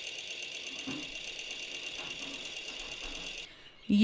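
Sewing machine running with a rapid, even clatter (thar thar thak), thin and high-pitched; it stops about three and a half seconds in.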